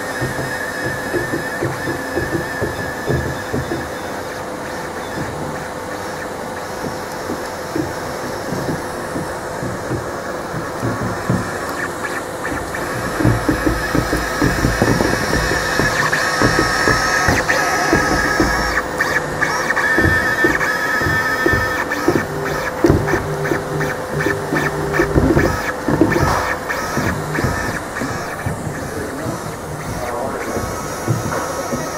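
Hangprinter v3 cable-driven 3D printer running a print: its stepper motors whine in steady tones that jump in pitch as the moves change, over a constant fan hum, with rapid clicking. It gets louder about halfway through.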